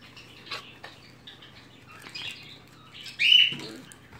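Cardboard box packaging being handled, with light rustles and taps, and one short, loud high squeak about three seconds in.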